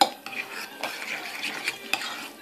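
A spoon stirring a thick mayonnaise dressing in a ceramic bowl, with wet squelching and small clinks and scrapes of the spoon against the bowl; a sharp clink right at the start.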